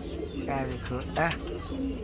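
Domestic pigeons cooing near the loft, in a few short calls, along with a faint man's voice.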